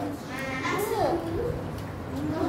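Young children's voices calling out an answer together, in long drawn-out, sing-song syllables.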